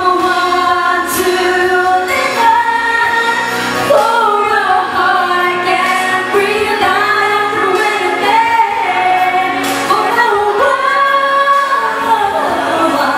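Singing with musical accompaniment: sustained, melodic vocal lines carrying on steadily.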